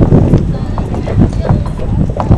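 Bystanders talking, with repeated short knocking footsteps over a steady low rumble.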